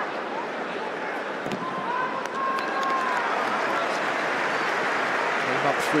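Football stadium crowd: a steady din of many voices that grows slightly louder about halfway through.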